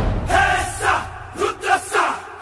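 A break in a film song where the drum beat drops out and a chorus of voices chants in short phrases with brief gaps between them.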